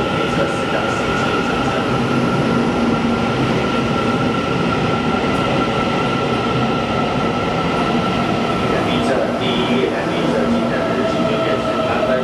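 Taiwan Railway electric local train running along an underground station platform as it pulls in to stop: steady rolling rumble of the wheels on the rails with a constant high whine.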